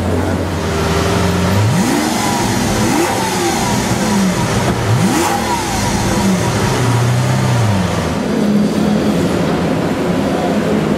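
Lamborghini Aventador LP700-4's V12 engine revved while stationary: quick throttle blips about two, three and five seconds in, each pitch rising sharply and falling back. A shorter held rise near seven seconds falls back toward idle.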